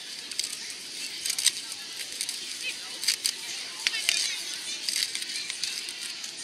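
Latex modelling balloon squeaking and rubbing as it is twisted into a balloon animal: irregular short, high squeaks and crackles.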